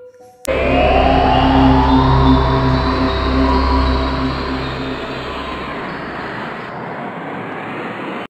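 Ominous transition music sting: a deep rumble under held tones with a rising swell. It starts suddenly about half a second in and slowly fades.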